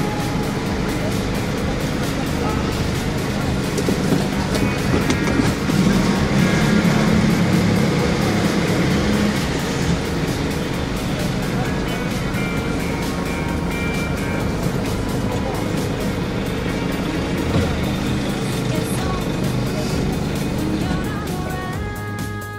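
Mercedes Sprinter van running and moving off, heard from inside the cab, with music and a voice mixed in under the vehicle noise.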